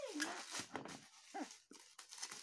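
Bubble-wrap plastic crinkling faintly as a wrapped parcel is handled. Two short, high cries that fall in pitch cut across it, one at the start and one about a second and a half in.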